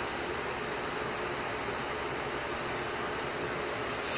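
Steady background hiss, even and unbroken, with no distinct knocks or voices.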